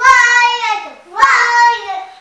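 A high-pitched voice singing two long held notes, the second starting just over a second after the first.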